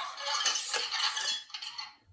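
Motorized Iron Man helmet replica closing its faceplate on a voice command: a busy, metallic mechanical sound from the helmet's servos and built-in robotic sound effects, which cuts off near the end.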